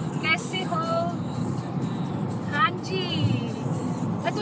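Steady road and engine noise of a car travelling at motorway speed, heard from inside the cabin, with short stretches of a voice over it about a second in and again near three seconds.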